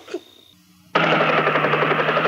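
Cartoon helicopter sound effect: a rapid mechanical chopping clatter over a steady low engine hum, starting suddenly about a second in.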